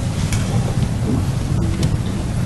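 Steady rumbling hiss of background noise, strongest in the low range, during a pause in a man's speech at a microphone.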